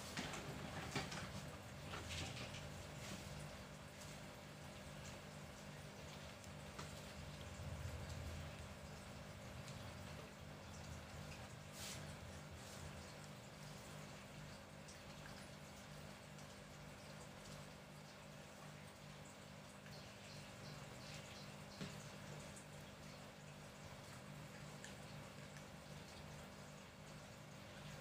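Faint room tone with a steady low hum, broken by a few faint clicks and light handling noise as multimeter test leads are held against the motor's wires.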